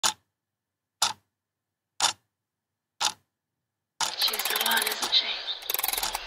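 Four short, sharp ticks, evenly one second apart, like a clock ticking, with dead silence between them. About four seconds in, a busy stretch of noise begins and a voice is heard.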